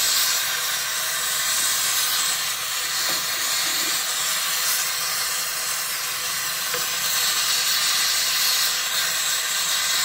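Gas torch flame burning with a steady, unbroken hiss while heating platinum in a crucible at a low setting, for a slow heat-up before the melt.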